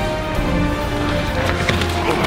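Action-trailer soundtrack music of sustained tones. In the second half a run of sharp cracking hits from the trailer's sound effects joins it.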